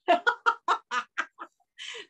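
A woman laughing heartily: a quick run of about seven short bursts that grow quieter over about a second and a half.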